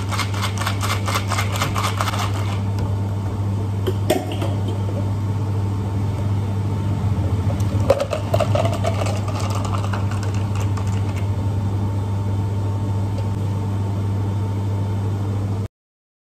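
Ice rattling in a clear plastic drink shaker being shaken hard for the first couple of seconds. Then the iced drink is poured from the shaker into a plastic cup about eight seconds in. A steady low hum runs underneath, and the sound cuts off suddenly near the end.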